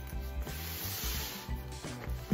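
Nylon compression-strap webbing on a tactical backpack being pulled through its buckle: a sliding, rubbing sound that lasts about a second, starting about half a second in. Background music plays under it.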